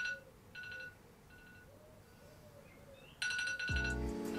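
Smartphone alarm tone chiming in short repeated bursts: a loud burst at the start, two fainter ones in the next second or so, and a loud one again about three seconds in. Strummed guitar music comes in just before the end.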